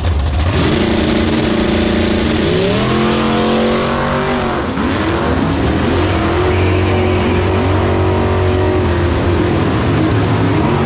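Two no-prep drag cars, a Fox-body Mustang and a Camaro, with engines held at a steady high rev on the line, then launching at full throttle about two seconds in, their pitch climbing through several upshifts as they run down the track.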